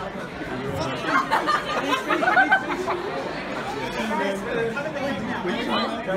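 Several people talking over one another at once: indistinct group chatter close to the microphone.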